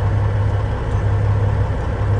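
Tuned-up Peterbilt semi truck's diesel engine idling, heard inside the cab as a loud, steady low hum.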